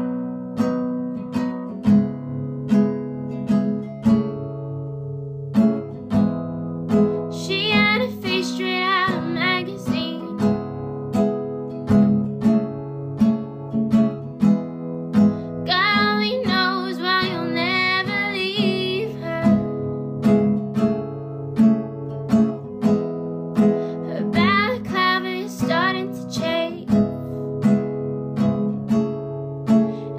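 Acoustic guitar strummed in a steady rhythm, with a woman singing in phrases that come in about a quarter of the way through, again around the middle, and once more near the end.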